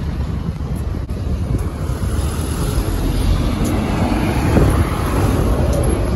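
Outdoor street noise: road traffic with wind rumbling on the microphone, growing louder past the middle.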